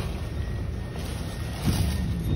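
Steady low rumble and hiss of a modern tram's passenger cabin, heard from a seat inside.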